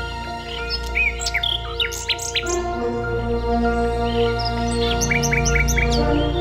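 Common nightingale singing: quick chirps and whistled phrases, with a run of four short repeated notes near the end. Soft ambient music with long held tones plays underneath.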